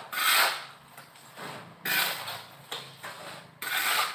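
Hand-worked scraping strokes on a hard surface. There are three harsh strokes about one and a half to two seconds apart, with a fainter one between the first two.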